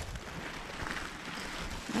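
Steady hiss of light drizzle falling on open gravel ground, with wind buffeting the microphone.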